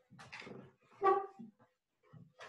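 A short animal call about a second in, after a softer noise.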